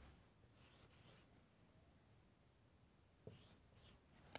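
Faint marker strokes on a whiteboard, heard as two short passes about half a second in and again near the end, over otherwise near silence.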